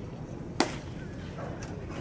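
A single sharp impact, a crack-like knock, about a third of the way in, over a steady outdoor ballpark background.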